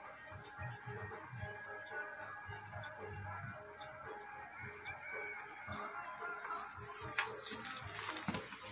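Outdoor ambience with a steady high-pitched insect drone and faint bird calls over it.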